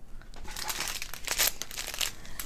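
Small clear plastic bags of round diamond-painting drills crinkling and rustling as they are handled, a run of small crackles.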